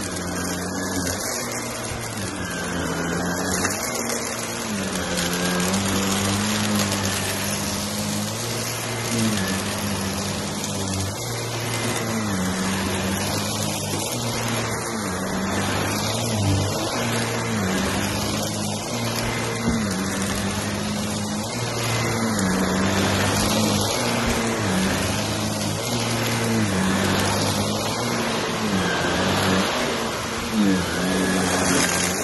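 Shark upright vacuum cleaner running over thick shag carpet. Its motor hum dips in pitch and comes back every couple of seconds as it is pushed back and forth.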